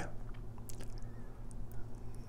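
A few faint short clicks, most of them a little under a second in, over a low steady hum.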